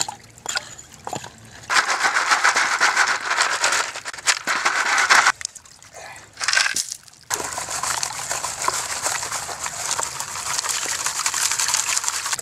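Stream water splashing and sloshing as loose gravel and leaves are scooped from a shallow runoff stream into a gold pan and the pan is dipped in the water. There is a brief lull a little past the middle, then steadier splashing.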